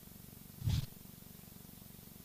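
A steady low, rapidly pulsing hum, with one short muffled burst, the loudest thing here, about three-quarters of a second in.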